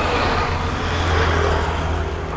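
Motor vehicle engine running close by: a steady low hum with road noise, swelling slightly around the middle and easing off.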